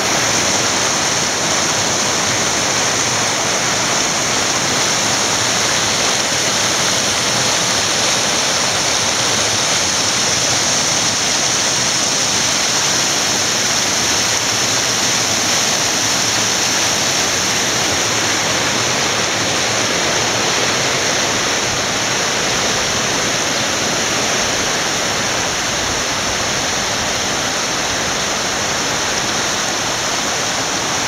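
The flooded Thoré river rushing loudly and steadily, floodwater churning white as it pours down a channel and spills over the road.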